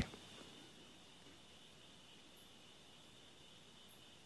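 Near silence with a faint, steady, high chirring of crickets in the background.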